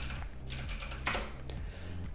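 Keystrokes on a computer keyboard: a short, irregular run of taps typing a one-word name.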